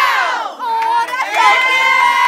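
A team of girls shouting a cheer together as they break from a huddle: a loud falling yell, then from about half a second in a long held group shout.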